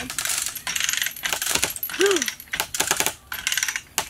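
Lever chain hoist being pumped, its ratchet clicking and load chain clinking in quick clusters as it takes up the weight of a giant pumpkin hanging in straps. A short squeak that rises and falls comes about two seconds in.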